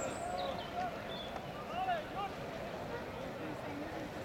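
Distant voices calling and shouting in short, high bursts over a steady outdoor hiss.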